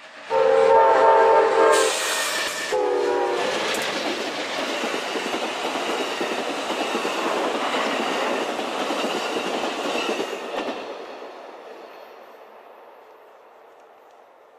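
Amtrak passenger train passing: the Genesis diesel locomotive's horn sounds one long blast, then a short one. Then Superliner bilevel cars roll by with steady wheel-on-rail noise, which fades away over the last few seconds.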